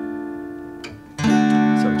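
Acoustic guitar: a strummed D chord rings and fades. After a light click, a new chord is strummed sharply about a second in and rings on; one note of the chord, its third, is moved a fret to switch between D major and D minor.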